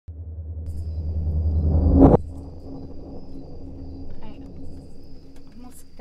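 A low rumble that swells for about two seconds and cuts off suddenly, followed by a quieter steady low hum.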